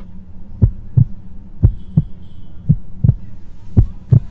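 Heartbeat sound effect: pairs of low thumps, lub-dub, coming about once a second over a steady low hum.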